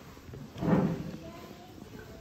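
A single footstep thump on a wooden stage platform about two-thirds of a second in, over faint voices in the background.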